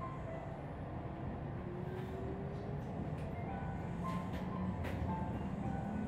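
Steady low rumble of a train running, heard inside a passenger car, with faint music of scattered notes over it and a few light clicks.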